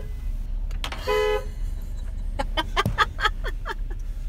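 Car horn giving a short toot about a second in, followed by a quick run of short, falling chirp-like sounds in the second half.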